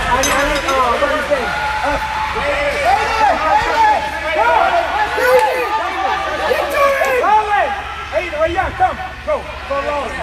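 Overlapping shouts and chatter of spectators and young players in a large indoor hall: many voices at once, none of them clear words.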